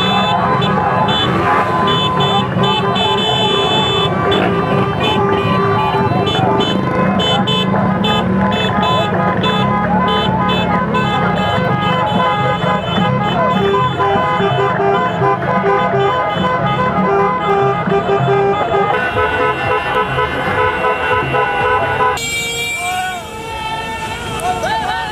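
Many car horns honking over a crowd's shouting and chanting in a street celebration. Several horns sound steadily while others toot in repeated short beeps.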